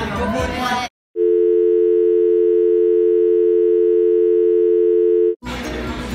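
A steady two-note telephone dial tone, loud and unchanging for about four seconds, cutting in suddenly after a moment of silence and cutting off just as suddenly. Voices and music play before and after it.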